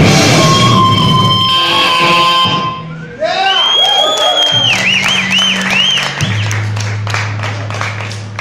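A grindcore band playing loudly live, breaking off about three seconds in. The electric guitar then squeals with feedback, its pitch wavering up and down over a held low note. The sound thins out and fades toward the end, with scattered clicks.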